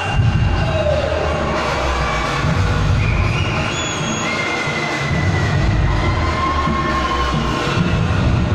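Loud amplified music with heavy bass over a large crowd cheering and shouting.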